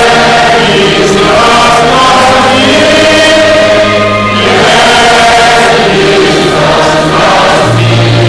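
Choir singing a hymn together over held low accompanying notes that change pitch every few seconds.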